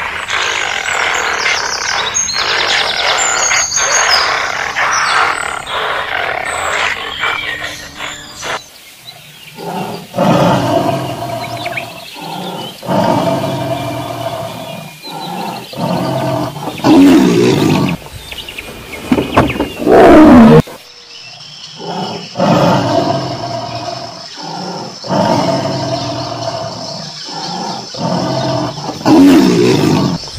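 Tiger roaring and growling again and again from about nine seconds in, each call a deep, rough roar, the loudest ones near the middle and end. Before that, for the first eight seconds or so, a denser, busier sound with high chirps.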